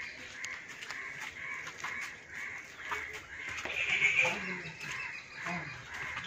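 Faint outdoor background of birds calling, with a louder call about four seconds in.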